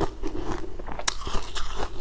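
Close-miked crunching of frozen sweet-ice balls being bitten and chewed, with sharp crunches at the start and about a second in and smaller crackles between.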